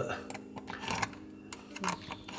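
A few faint ticks of a metal tool against the stainless steel sink drain as the strainer fitting is twisted out, over a low steady hum.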